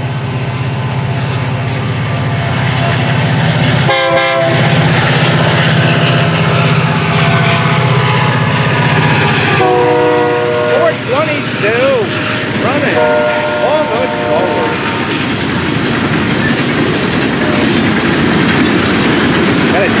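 Florida East Coast diesel locomotive 422 passing close with its engine running, sounding its horn in a short blast about four seconds in and two longer blasts near the middle, its engine sound dropping away as it goes by. The boxcar and hopper cars behind it then roll past with steady wheel clatter.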